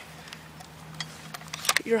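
A few faint, sharp clicks from hands working the receiver of an airsoft AK-47, over a steady low hum; a man's voice starts right at the end.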